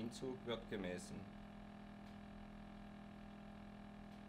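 A man's narration trails off in the first second, then a faint, steady low hum close to silence.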